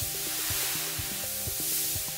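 An aerosol can of spray paint spraying onto a wall in one long, steady hiss, over background music.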